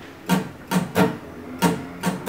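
Epiphone acoustic guitar strummed in a down-and-up rhythm, about five short strokes.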